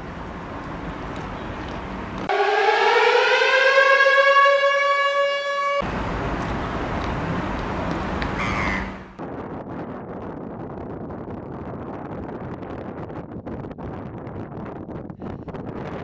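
A siren winding up, its pitch rising and then holding for about three and a half seconds before it cuts off abruptly. Wind rumbles on the microphone before and after it.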